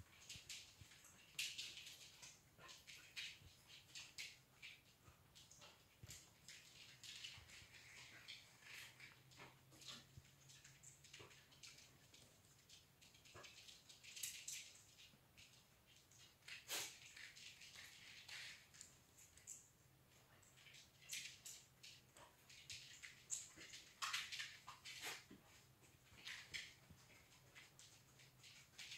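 Faint, scattered sniffing and small movement noises of a dog searching a room for a scent, in short irregular bursts over near silence.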